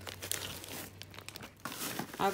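Plastic food packaging crinkling irregularly as a wrapped package is handled and set down among bagged groceries.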